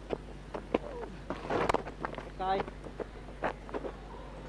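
Cricket field sounds: a sharp knock about three-quarters of a second in as bat meets ball, scuffling and clatter as the batters set off, then a short shouted call from a player, typical of calling a quick single.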